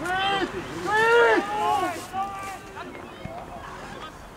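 Men shouting across a football pitch: several loud calls in the first two seconds, then a few fainter ones.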